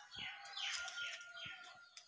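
Birds calling outdoors: a run of short, quickly repeated falling notes with a thin steady high tone beneath them, and faint low knocks from handling the phone.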